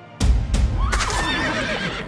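A sudden loud bang, then a horse whinnying for about a second, its pitch wavering up and down, over a dramatic music score.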